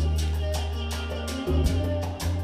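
Live Latin band playing salsa-style music: conga and percussion strokes keep a steady beat of about four or five a second over a deep bass line.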